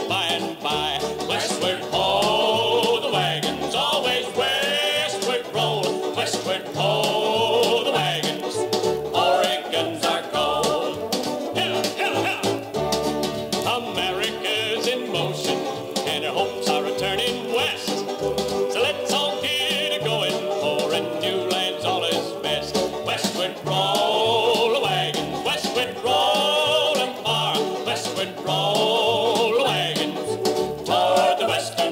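78 rpm record playing a 1950s country-western song with band accompaniment and a walking bass line, with steady surface clicks from the disc.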